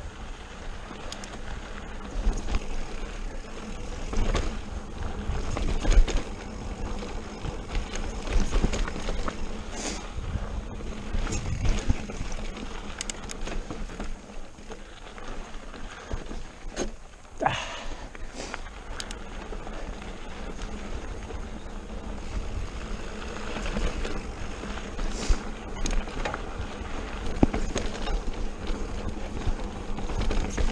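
Mountain bike being ridden over sand and slickrock, heard from a camera mounted on the bike: a steady rumble of tyres on dirt and rock, frequent knocks and rattles from the bike over bumps, and wind on the microphone.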